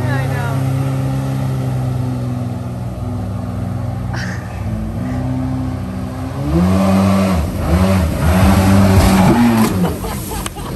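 Small jet boat's engine running at a steady speed, then revved up and down several times in quick succession over the last few seconds, loudest near the end.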